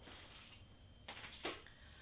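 Very quiet room tone with a faint steady high tone in the first second and a couple of faint soft sounds near the middle.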